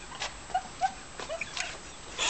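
A woman's stifled giggling: a few short, quiet squeaks about a third of a second apart.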